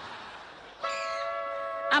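A short held chord of several steady electronic tones, sounding for about a second from about a second in, after a faint hiss.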